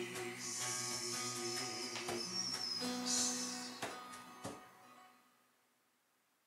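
Acoustic guitar and bodhrán playing the final bars of a folk song. A few last drum strokes land near the middle, then the closing chord rings and fades away to quiet about five seconds in.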